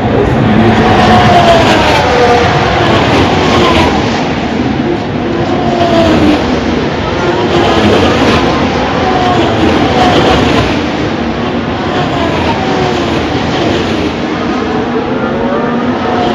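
Formula One cars' turbocharged V6 engines passing one after another, each engine note falling in pitch as the car goes by.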